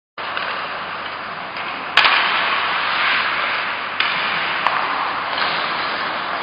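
Ice hockey play on a rink: a steady scraping hiss of skates on ice, with a few sharp knocks of stick and puck, the loudest about two seconds in and smaller ones later.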